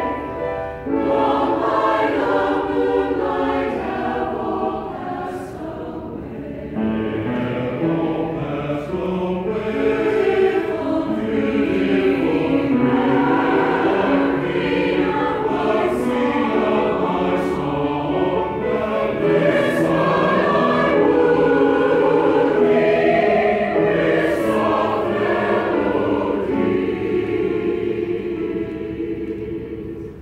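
Men's choir singing in parts, a softer passage a few seconds in before the voices swell louder again.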